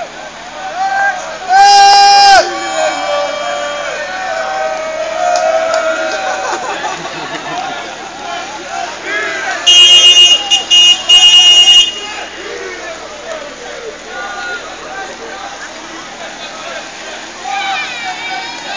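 Crowd voices and shouting, cut through by one loud, steady horn note about two seconds in. Around ten seconds in a car horn sounds three loud blasts, two longer ones around a short one.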